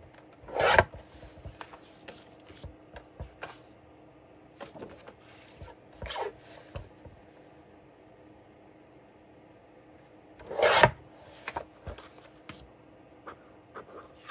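Guillotine paper trimmer's blade arm slicing through thick scrapbook paper: a short rasping cut just under a second in and a second about ten seconds later. Between the cuts, paper slides and rustles on the trimmer bed with small clicks.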